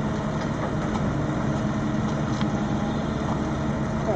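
Fendt tractor's diesel engine running steadily at an even, low speed while hitched to a loaded timber trailer.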